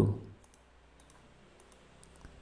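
Faint computer mouse clicks, a handful spaced irregularly, as buttons on an on-screen calculator are pressed.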